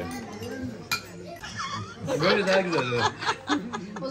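Several people talking and laughing at a table, with one sharp tap or clink about a second in.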